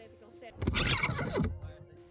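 A loud call lasting about a second with a falling pitch, starting about half a second in, over faint background music.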